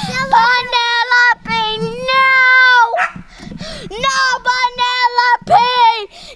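A boy singing loud, high notes with no clear words, in short phrases with brief breaks and one long held note near the middle.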